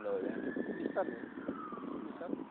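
A siren wailing: one long, slow tone that rises in pitch, peaks about half a second in, then falls away toward the end.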